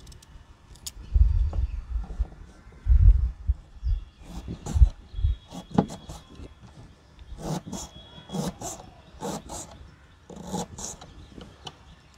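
Kitchen knife cutting through raw beetroot onto a plastic cutting board: a series of separate chopping strokes, about one a second in the latter part. Loud low thuds come in the first few seconds.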